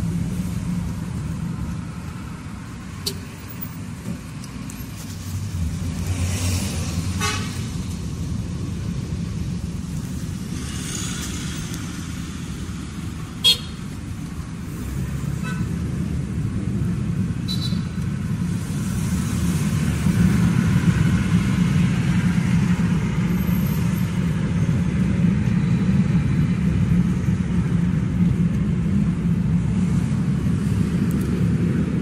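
Steady low rumble of a taxi's engine and tyres heard from inside the cabin in city traffic, with brief car horn toots. A single sharp click comes near the middle, and the rumble grows louder in the last third as the car gathers speed.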